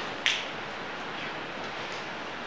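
Whiteboard marker stroked across the board: one short, sharp scratchy hiss about a quarter second in, then only a steady room hiss.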